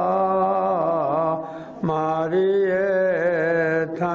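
A man's solo voice chanting a Balti noha, a Shia lament, holding long wavering notes. He breaks off for a breath about one and a half seconds in, then resumes.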